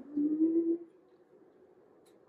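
A woman humming with her mouth closed while chewing a bite of food, a happy hum of enjoyment that rises in pitch and stops just under a second in.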